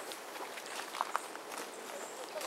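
Footsteps on the ground over a steady hiss of background noise, with two sharp clicks close together a little after a second in.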